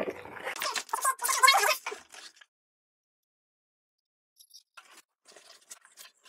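Cardboard packaging and packing inserts rustling and crunching as a box is lifted off and the contents unpacked, for about two seconds, then a pause with a few faint handling sounds near the end.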